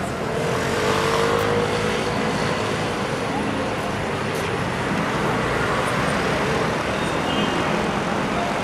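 City street traffic: vehicle engines running and cars passing close by, with a faint rising engine tone early on.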